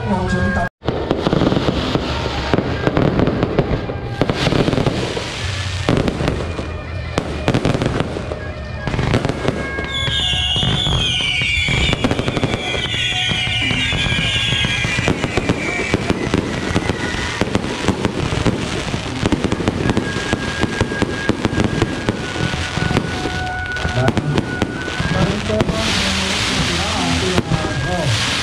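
Fireworks and firecrackers going off in a dense, continuous crackling and banging as aerial shells burst overhead. From about ten to fifteen seconds in, several high, wavering whistles rise over the crackle.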